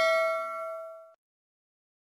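A bell-like ding from the closing sting of an outro jingle rings out, fading, and cuts off a little over a second in.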